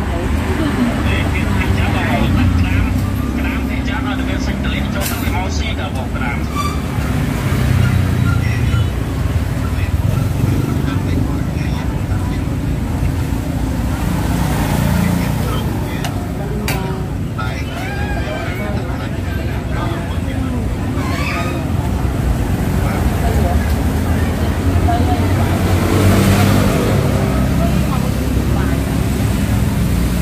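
People talking over the table, with a steady rumble of passing road traffic underneath and a few short clicks.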